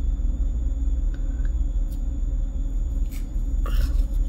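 A peel-off face mask being pulled off the skin of the forehead and nose, with faint clicks and a short scratchy peeling noise near the end, over a steady low background rumble.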